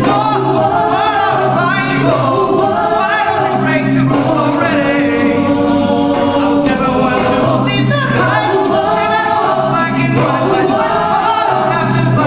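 A mixed a cappella group singing through microphones: a male lead voice over layered backing vocals, with a sung bass line holding long low notes that recur every few seconds.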